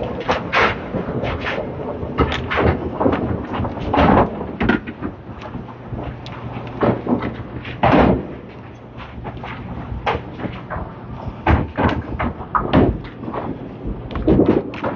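Candlepin bowling alley: irregular sharp knocks and clattering crashes of balls and pins on wooden lanes, with pinsetter machinery. The loudest crashes come about 4 and 8 seconds in.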